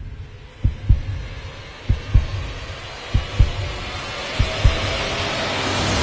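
Heartbeat sound effect: four pairs of deep lub-dub thumps about a second and a quarter apart, under a rising hiss that swells toward the end as a build-up.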